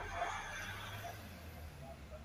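Faint handling noise over a low steady hum, with no drill running.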